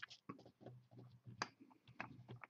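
Quiet handling noise of fingers working thin wire on a paper towel: faint scattered clicks and rustles, with one sharper click about one and a half seconds in.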